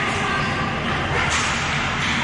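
Ball hockey play in a large echoing rink: sticks slapping and clattering against the ball and floor, with a sharper stretch of slaps about a second and a half in, over faint shouting from the players.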